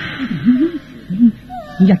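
A man whimpering, in short moans that rise and fall in pitch, while a hissing noise fades out over the first second.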